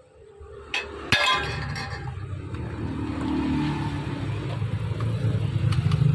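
A couple of sharp clinks about a second in, then a low, steady mechanical rumble that slowly grows louder.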